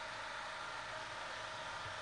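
Steady faint hiss with a low hum: the background noise of a microphone recording during a pause in speech.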